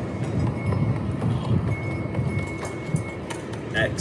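A cupped hand patting repeatedly on a sleeved forearm and upper arm, a run of soft slaps, with wind buffeting the microphone underneath.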